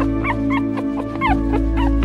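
Puppy whimpering: four short, high whines that bend in pitch, over background music with steady held tones.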